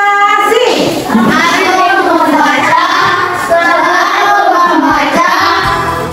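Children singing a song together, with music underneath. It starts abruptly, and steady low notes come in near the end.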